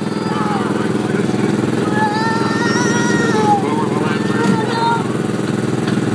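A go-kart's small engine running steadily at an even speed. A voice rises over it about two seconds in, and again near the end.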